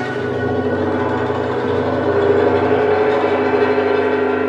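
Chinese traditional instrumental ensemble playing, with guzheng, erhu and dizi: plucked zither notes under sustained bowed and flute lines, with a long held note from about halfway through.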